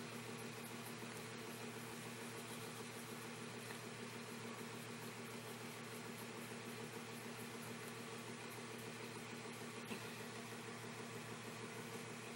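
Steady low hum with hiss throughout, like a small appliance or fan running, with one faint click about ten seconds in.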